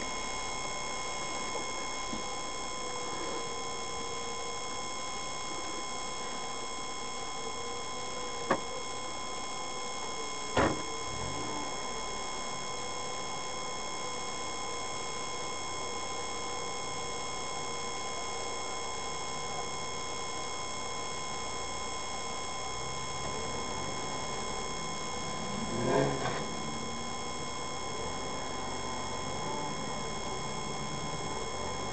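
Dashcam recording of a 4x4's cabin: a steady low background noise with a constant electronic whine. Two sharp knocks come about eight and a half and ten and a half seconds in, and a short louder sound comes about 26 seconds in.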